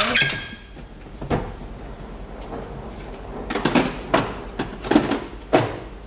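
A SMEG coffee maker being shifted and pushed back on a stone kitchen countertop: a few scattered knocks and bumps, a light one about a second in and several sharper ones between about three and a half and five and a half seconds in.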